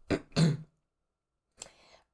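A person clearing their throat: two short rasping bursts in the first half second.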